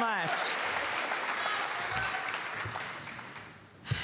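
Audience applauding, the clapping fading away over the first three seconds or so. A short thump sounds near the end.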